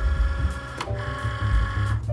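Original-version Cricut Maker cutting machine running with a mechanical whir, heard under background music with held notes and a bass line.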